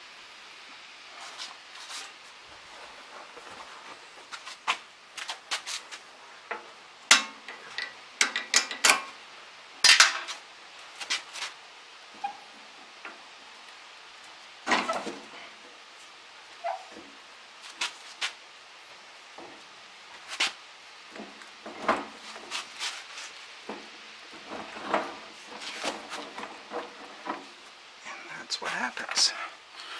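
Irregular metal clanks and clinks as the steel pin, bracket and bar of a tractor's 174 planter runner mounting are worked loose with hand tools, the loudest knocks about 7 and 10 seconds in.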